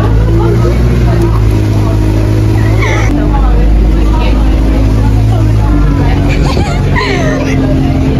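Diesel bus engine running as heard from inside the passenger cabin, a steady low hum whose pitch steps a few times as the bus drives on, with passengers' voices in the background.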